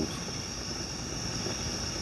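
Steady hiss of a gas fire pit's flame, with a constant high-pitched trill of crickets over it.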